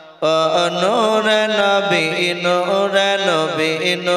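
A man's voice chanting a devotional verse in a melodic, drawn-out style, holding and bending long notes, amplified through a microphone. There is a brief catch of breath at the very start.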